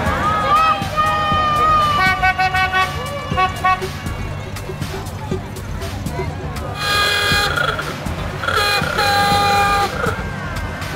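Vintage car horns sounding: a run of short toots in quick succession in the first few seconds, then two longer blasts about seven and nine seconds in, over crowd chatter.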